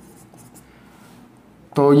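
Marker pen writing on a whiteboard, faint. A man's voice starts speaking near the end.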